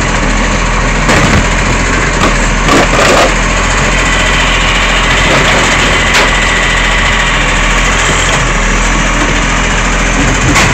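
Side-loading garbage truck's diesel engine running loud and steady at close range while its automated arm grips and lifts a wheelie bin. A few metallic clanks sound in the first three seconds, and a thin steady whine comes in the middle seconds as the arm lifts.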